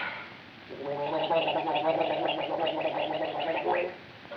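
A man gargling: a pitched, fluttering gurgle that starts about a second in and lasts about three seconds.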